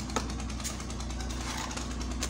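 Steady low hum of a small motor running, with a fast even pulse and one faint click just after the start.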